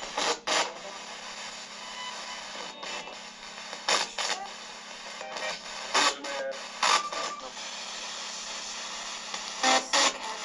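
Steady radio static hiss from a handheld sweeping radio (a spirit box), broken every few seconds by short bursts of sound as it skips between stations.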